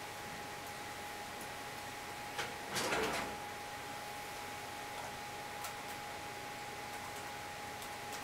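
Great Dane and puppy playing on a blanket: a short scuffle of movement about three seconds in, over a steady hiss and faint hum.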